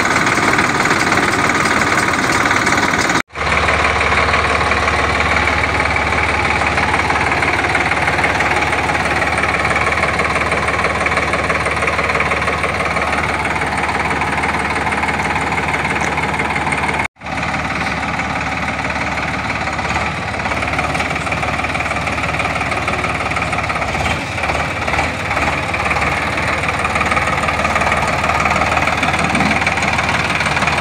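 Sonalika Sikander tractor's diesel engine running steadily, with a heavy low hum. The sound cuts out abruptly twice, about three seconds in and again around the middle.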